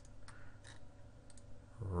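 A few faint clicks of a computer mouse as the clips are selected.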